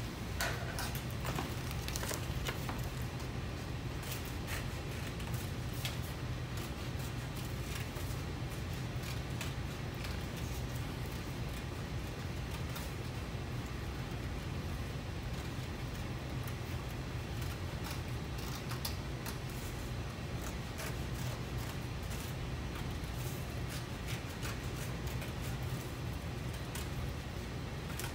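Scissors cutting through folded construction paper: scattered light snips and paper rustling over a steady low room hum.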